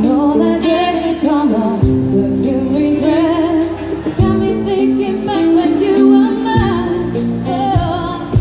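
Live pop band of electric guitar, bass guitar, drum kit and keyboard playing through a PA, with a wavering, drawn-out vocal line sung over held chords. Kick drum hits land every couple of seconds, with cymbals above.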